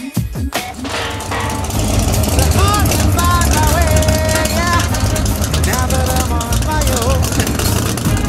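Drag-race car engine running as a loud, steady low rumble that sets in about a second in, with people's voices over it.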